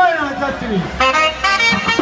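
A loud voice calling out in long gliding notes, falling in pitch over the first second, then holding steadier notes, between passages of the festival band's music.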